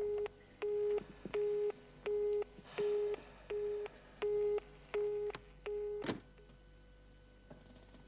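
Telephone busy tone (short beeps) from a handset after the other party has hung up. A single low steady tone beeps on and off evenly, about three beeps every two seconds, nine in all. It stops with a click about six seconds in.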